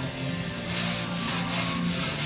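Sandpaper (220 grit) on a foam pad or block being rubbed back and forth over primer, in quick strokes about four a second that start under a second in. Background music plays underneath.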